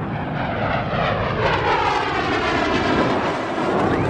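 F-15 Eagle's twin jet engines during takeoff: a loud, steady roar with a whooshing, phasing sweep that dips and then rises again as the aircraft moves.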